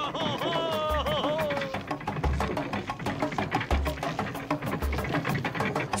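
Jungle-style hand-drum music: fast, dense drum strokes over a deep thump that comes about every second and a quarter. A high voice glides up and down in pitch over the first second or two.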